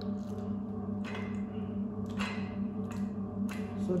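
A few light metallic knocks and scrapes, about a second apart, as the steel screw and press plate of a cold honey press are fitted onto its perforated steel basket.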